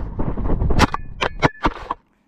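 A child mannequin carrying a small camera is struck by a car: a heavy rushing scrape, then about five sharp clacks in the last second as the mannequin and camera tumble and hit the road.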